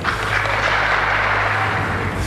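Large audience applauding, a dense steady clapping that fades out just after two seconds.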